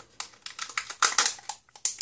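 Crinkling and crackling of the peel-off seal being pulled away from a Kinder Joy egg's plastic toy capsule, in quick irregular rustles.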